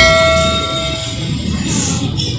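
A bell-like chime sound effect from a subscribe-button animation: struck once and ringing out, fading over about a second and a half.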